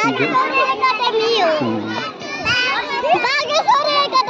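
Young children's voices: overlapping high-pitched chatter and calls of a group of children playing close by.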